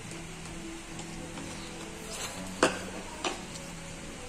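Quiet background music, with two sharp clinks of eating utensils against tableware about two and a half seconds in and again a moment later, the first the louder.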